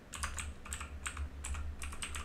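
Typing on a computer keyboard: a quick run of about ten keystrokes starting a moment in.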